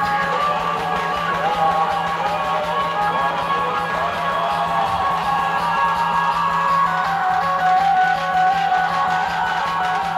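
Dhumal band music: an amplified melody line, held and gliding notes, over a steady low hum.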